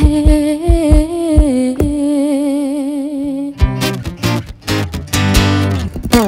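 A woman singing long held notes with a wavering vibrato over plucked acoustic guitar. About midway through, the voice gives way to strummed acoustic guitar chords.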